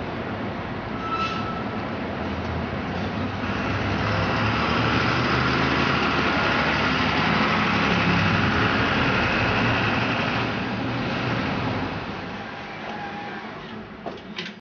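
Articulated dual-mode trolleybus/diesel bus driving past, its running noise swelling as it comes close and fading as it moves away.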